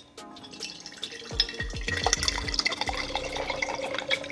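Canned latte poured from the can into a glass mason-jar mug, the liquid glugging and splashing as the glass fills, starting about a second in.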